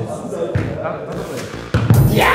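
A football thumping off players and the hard court floor, with players' voices between the touches and a louder thump near the end.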